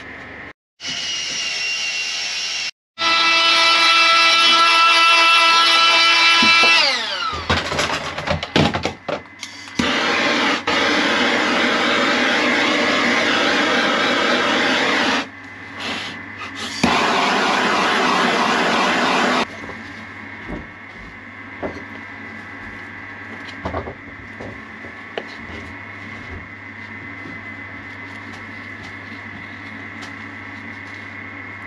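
A handheld gas blowtorch hisses steadily in two long stretches, with a steady pitched tone sliding down in pitch a few seconds before it. Afterwards a low steady hum carries light scrapes and clicks as epoxy filler is worked onto the wood with a stick.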